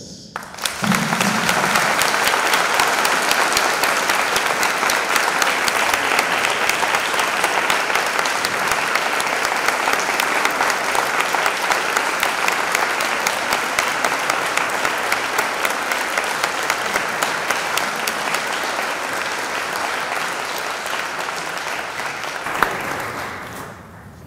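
Audience applauding: a sustained round of clapping that starts about half a second in and fades away near the end.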